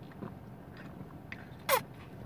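Drinking soda from a glass bottle: faint swallowing and small mouth clicks, then a brief louder sound, falling in pitch, near the end as the bottle comes off the lips.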